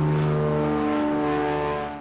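Floatplane's propeller engine droning steadily as it flies low over the water, fading out near the end.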